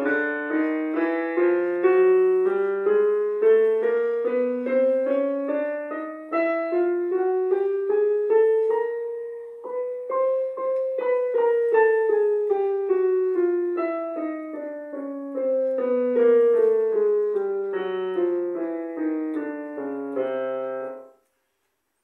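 Digital piano playing a chromatic scale in parallel motion, both hands an octave apart. It climbs note by note for about ten seconds, descends back to the starting notes, and stops abruptly about a second before the end.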